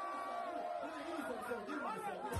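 A man's voice over a microphone holds one long drawn-out note, then breaks into wavering, rising and falling calls, with people chattering beneath.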